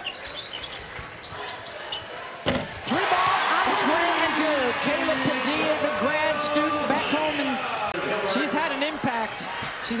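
Basketball game sound in an arena: a ball bouncing on the hardwood and short sharp clicks throughout, with a loud knock about two and a half seconds in. After the knock the crowd grows louder, with many voices shouting.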